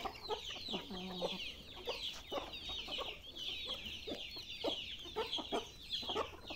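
A flock of chickens clucking and calling as they feed on scattered corn: many quick, overlapping high-pitched calls mixed with lower clucks.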